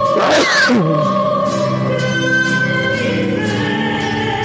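Church music with sustained chords and singing: a communion hymn. About half a second in, a note slides steeply down in pitch.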